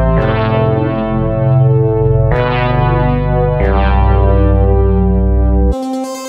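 Electronic dubstep track: long, buzzy synth notes rich in overtones over a deep bass, a new note struck every one to two seconds. Near the end the bass cuts out suddenly, leaving a thinner, higher keyboard-like line.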